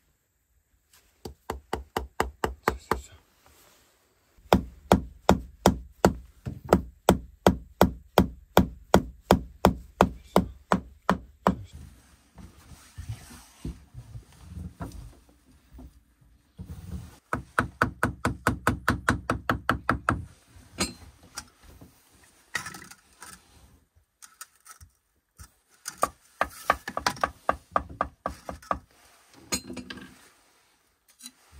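Mallet tapping bricks down into their mortar bed in quick, even runs of about three or four blows a second, two long runs with pauses between. In the pauses, softer knocks and scraping as bricks are set and mortar is worked.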